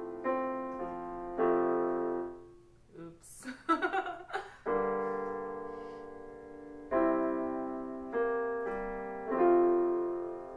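Yamaha digital piano playing sustained chords, each struck and left to ring and fade, a new chord every one to two seconds. About three seconds in the chords drop out for a moment and a short burst of voice is heard before the playing resumes.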